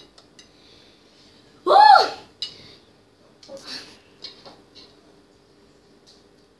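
Fork and spoon clicking against a ceramic plate while noodles are eaten. About two seconds in comes a short, high vocal cry that rises and falls in pitch, a reaction to the spicy food.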